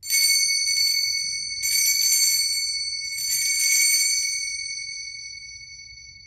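Altar bells rung three times at the elevation of the consecrated host, each ring a short shaken jingle over high, clear bell tones. The ringing hangs on and slowly fades after the third ring.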